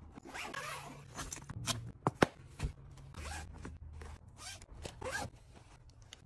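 Close-up packing sounds: a fabric travel bag and its zipper being handled, in a series of short rasping swishes, with two sharp clicks about two seconds in.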